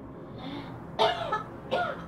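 A woman coughing twice, short harsh coughs with voice in them, about a second apart.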